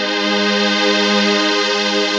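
Z3TA+ 2 software synthesizer playing a preset: a held chord of several sustained notes with no bass beneath it, swelling slightly.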